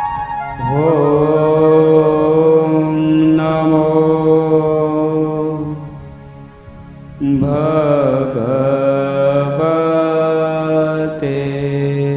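A man's voice chanting a devotional mantra in long held phrases over a steady low drone, each phrase opening with a wavering swell. There is a short pause about six seconds in before the next phrase.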